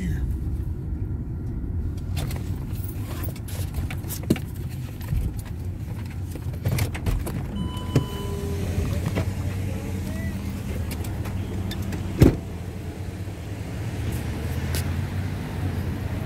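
A car's engine running low and steady, heard from inside the cabin, with a few clicks and knocks, a brief high tone about eight seconds in, and one sharp thump about twelve seconds in.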